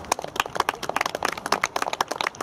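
Rapid, irregular crackling clicks, many each second.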